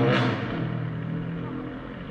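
Low, steady car rumble heard from inside a car's cabin, slowly getting quieter.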